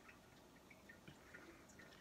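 Near silence, with a few faint small liquid sounds from a drink being sipped from a glass bottle.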